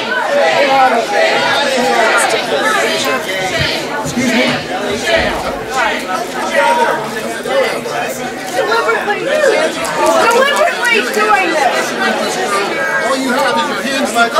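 Many people talking over one another at once: a steady hubbub of overlapping voices in which no single speaker stands out.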